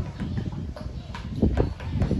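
A stirring stick churning freshly thickened alcohol hand-sanitiser gel in a plastic bucket, with irregular knocks of the stick against the bucket. The gel has thickened after triethanolamine was stirred in.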